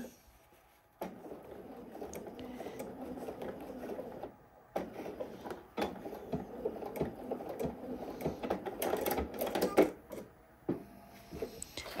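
Bernina 770 sewing machine stitching across zipper tape and a seam allowance, starting about a second in and running in several stretches with short pauses between them.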